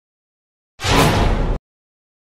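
A single short, loud burst of sound under a second long, starting and cutting off abruptly in otherwise dead silence.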